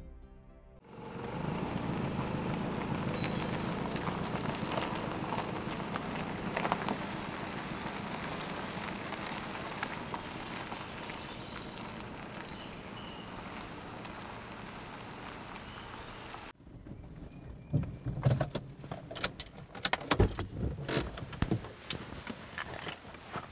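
A Toyota RAV4 driving slowly on a dirt forest road: a steady engine and tyre sound that fades a little and cuts off about three-quarters of the way through. After it come separate clicks and knocks of the car's door opening and footsteps on the gravel road.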